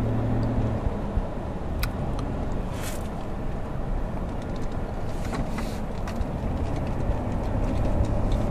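Steady low car engine and road rumble heard from inside the cabin while driving, with a few brief faint clicks.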